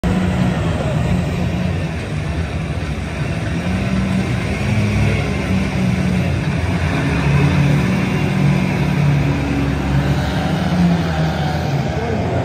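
Several ministox stock car engines running together as the cars lap an oval: a continuous engine drone whose pitch rises and falls as the cars rev and ease off.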